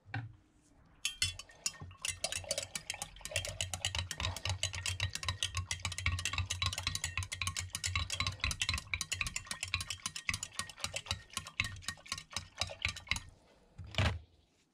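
A thin metal rod stirring liquid in a glass jar, clinking rapidly and continuously against the glass, as the nickel-plating solution is stirred to dissolve what was added to it. The stirring starts about a second in and stops a second before the end.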